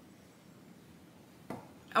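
Quiet room tone with faint low mouth noise while the food is being tasted, then a short click about one and a half seconds in, and a woman starts speaking at the very end.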